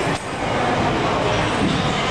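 Steady, loud background din of a busy gym, a dense noise with no clear words or tune in it.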